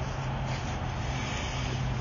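A steady low hum under a constant background noise.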